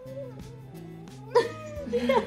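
A cat meowing: a faint wavering call early on, then a louder, higher meow about a second and a half in.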